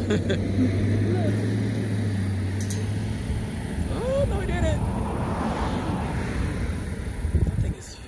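Vehicle engine idling with a steady low hum that stops about three seconds in; a low rumble carries on under laughter and a few voices until it cuts off near the end.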